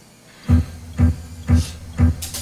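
Opening beats of a live hip-hop band: four deep bass-drum hits about half a second apart, leading into the song.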